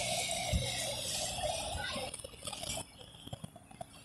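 Outdoor street background noise: a steady rush that fades out about two seconds in, leaving faint scattered ticks.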